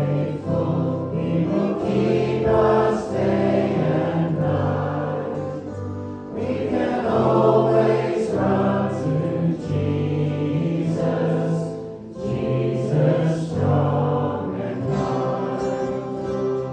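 Congregation singing a hymn together with musical accompaniment, in long held notes over a sustained low line.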